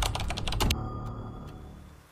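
A quick run of keyboard-typing clicks in the first second, a typing sound effect, over a music drone that fades out toward the end.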